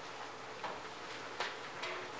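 Quiet room tone with a few faint, scattered ticks and taps from people moving about, about four in two seconds.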